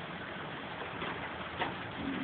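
Steady rain falling, an even hiss, with a short sharp tick about one and a half seconds in.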